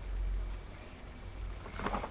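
Low rumble and hum from a webcam microphone, then, near the end, a quick run of rustling and knocking as papers or folders are handled.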